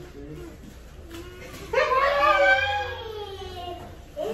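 A long excited vocal cry, starting high and falling in pitch over about two seconds, beginning a little under halfway through; only faint sounds come before it.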